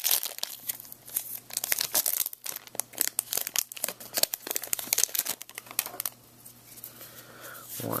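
Foil wrapper of a Pokémon trading-card booster pack being torn open and crinkled by hand, a dense run of crackles that dies down about six seconds in.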